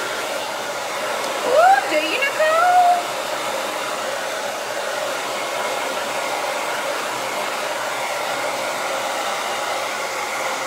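Hand-held hair dryer blowing steadily on hair, its motor giving a constant whine under the rush of air. Between about one and a half and three seconds in, a short, louder sound with a sliding, wavering pitch rises over it.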